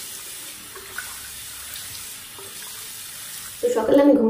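Tap water running into a bathroom sink while a face is rinsed, a steady hiss of water. A woman's voice begins near the end.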